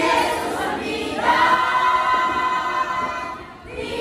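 A group of voices singing together in chorus, holding a long chord through the middle, with a brief break near the end.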